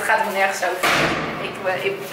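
A woman's voice in an echoing stairwell, broken by a short thump about a second in.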